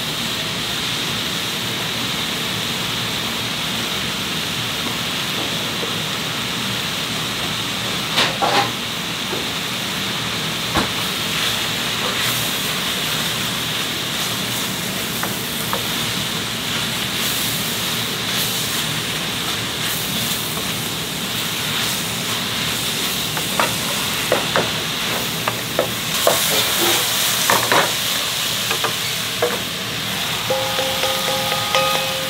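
Steady frying sizzle from sliced vegetables sautéing in an aluminium pot and pork belly frying in an iron pan beside it. A utensil clicks and scrapes against the pot as the vegetables are stirred, the knocks coming more often in the last few seconds.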